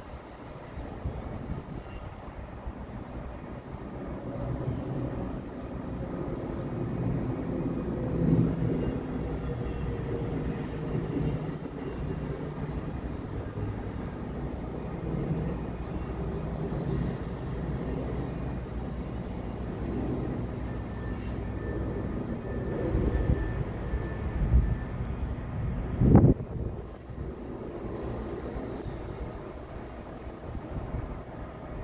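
Low, steady rumble of a distant engine that builds over the first several seconds and then holds. There is a single loud thump about 26 seconds in.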